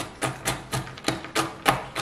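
Chef's knife chopping cashews and hazelnuts on a wooden cutting board: a quick, even run of sharp knocks, about four a second.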